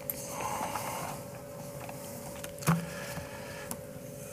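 Sheets of paper being handled and shuffled at a lectern, a soft rustle with a couple of light knocks, over a steady faint hum.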